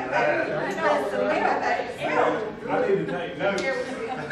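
Several people talking at once: indistinct, overlapping conversation in a large room.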